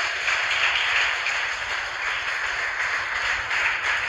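Steady radio static hiss on a mission communications audio channel, narrow in range like a radio link, with no voice over it.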